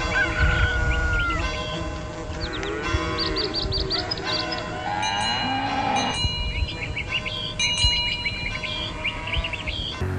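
Cattle mooing a couple of times over a steady ringing of bells, with birds chirping.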